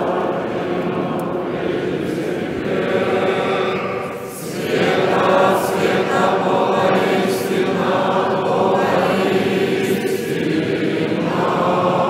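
A large Orthodox congregation singing a liturgical chant together, in sustained phrases with a short break for breath about four seconds in and again near the end.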